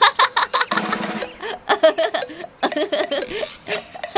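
A boy laughing in a long string of quick bursts, over light background music.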